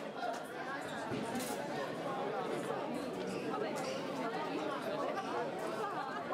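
Many people talking at once in a large, echoing hall: a steady babble of crowd chatter with no single voice standing out.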